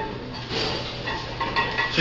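Barbell and its iron weight plates clinking and clanking during bench-press reps at 185 lb, several light metallic knocks, a few more near the end.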